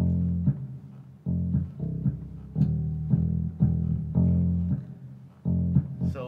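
Funky bass line played on an 88-key digital stage keyboard with a bass sound: low notes in an uneven, syncopated rhythm, each starting sharply and held briefly before the next.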